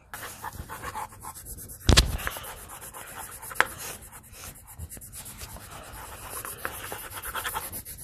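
Colored pencils shading back and forth on paper over clipboards, a fast scratchy rubbing. A single thump about two seconds in.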